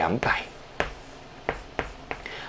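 Chalk writing on a blackboard: light scraping with a few sharp taps as numbers are written, the taps falling in the second half.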